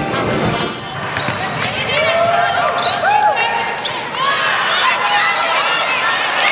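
Live basketball court sound: a ball bouncing on the hardwood floor, sneakers squeaking, and players' voices calling out.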